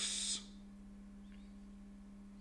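A brief sharp hiss right at the start, then a steady low electrical hum that runs on unchanged, with a few faint high chirps over it.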